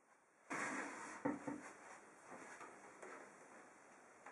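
Faint handling noise from a steel PC tower case being moved by hand on a table: a soft scraping rustle that starts about half a second in and fades, with a couple of light knocks a little over a second in.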